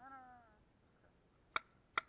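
Two sharp paintball marker shots about half a second apart in the second half, the loudest sounds here. At the very start, a short distant shout from a player across the field.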